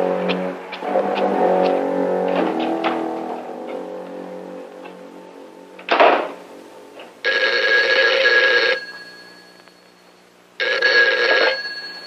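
Brass-led orchestral film score with plucked notes, fading away. A single loud hit comes about six seconds in, then a telephone's bell rings twice, each ring about a second and a half.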